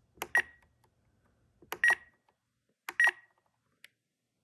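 Spektrum NX radio transmitter beeping three times, about a second and a quarter apart, each a short click with a brief electronic beep as its roller is pressed to enter a letter on the on-screen keyboard.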